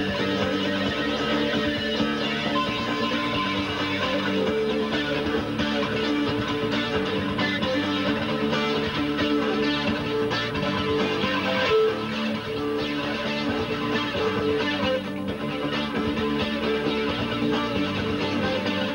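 A recorded band track with strummed and electric guitars over sustained chords, played back while it is being mixed on the desk.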